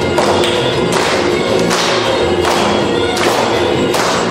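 Live folk dance music with a double bass. A regular struck beat falls about every three-quarters of a second.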